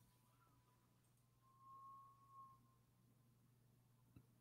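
Near silence: the video call's audio has dropped out while the connection is frozen, leaving only a faint steady hum and a faint thin high tone that swells slightly around the middle.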